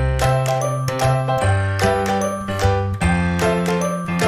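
Background music: a keyboard tune over a steady bass line, with high chiming bell-like notes.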